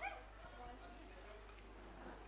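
Faint, indistinct voices in the background over a low steady hum, with a short high rising squeal right at the start.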